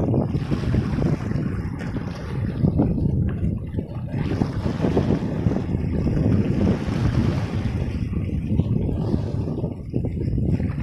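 Small sea waves washing in over a rocky shore and swirling between the stones, swelling and easing every second or two. Wind buffets the microphone, adding a low, uneven rumble.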